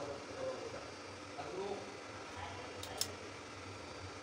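Faint, low voices in a small room, with one sharp click about three seconds in.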